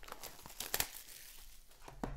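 Sports card pack packaging crinkling and tearing as hands open it, with a few sharp crackles, the loudest about three quarters of a second in.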